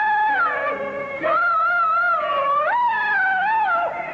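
Peking opera singing: a male dan performer's high falsetto voice holds a long, wavering melodic line with slides between notes, over the opera's accompaniment.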